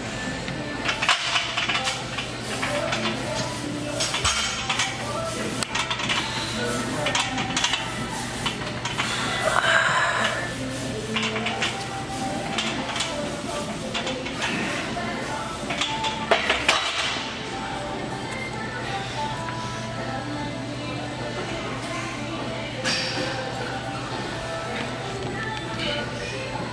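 Gym sounds: repeated metallic clinks of weight equipment, such as a loaded barbell on a Smith machine, over background music and voices, with a faint steady low hum.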